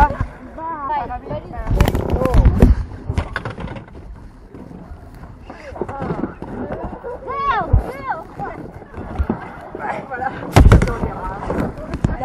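People's voices calling out while a swimmer is pulled from the river back into an inflatable raft, with loud thumps about two seconds in and again near the end as bodies and gear knock against the raft.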